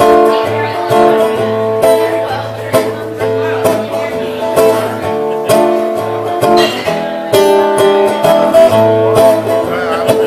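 Acoustic guitar strumming chords in a steady rhythm, with a strong accent about once a second over ringing bass notes, as an instrumental intro before the singing starts.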